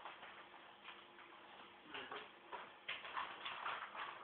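Ferrets scrabbling and playing, an irregular run of light clicks and scuffles that is busiest about three seconds in.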